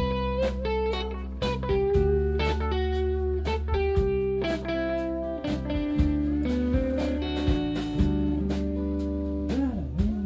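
Live band playing an instrumental passage with no singing: electric guitar over bass, drums and pedal steel, with held notes, a steady drum beat of about two hits a second, and a note bending up and down near the end.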